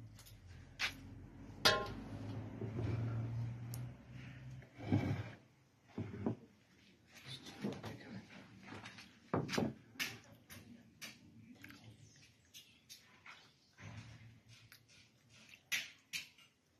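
Scattered light clinks and knocks of a fork against a steel bowl and plates as food is lifted out and laid down, with a low hum over the first few seconds.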